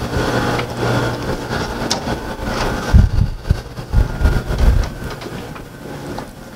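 Steady mechanical rumble of laboratory ventilation. Several low thumps about three to five seconds in come from walking with a handheld camera.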